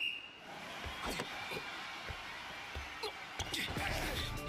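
Basketball anime soundtrack playing at a low level. A short high tone sounds at the very start, then a basketball bounces a few scattered times over a faint steady background.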